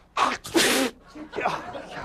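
A man sneezing once, loudly: a short catch of breath, then a hissing burst about half a second in.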